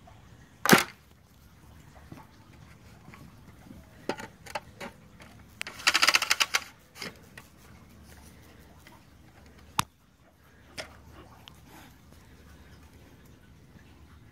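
Scattered sharp clicks and knocks: a loud knock just under a second in, a few lighter clicks around four seconds in, a rapid rattle of clicks about six seconds in, and single clicks near ten and eleven seconds.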